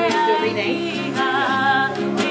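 A woman singing with held, wavering notes, accompanying herself on acoustic guitar.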